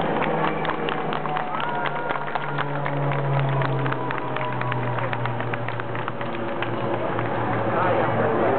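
A North American T-6 trainer's radial engine and propeller drone steadily as it flies past, the pitch sinking slowly as it draws away. Crowd voices and scattered short clicks lie over the drone.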